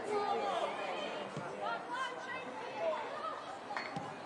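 Indistinct voices chattering and calling across a football pitch, with a single sharp knock shortly before the end.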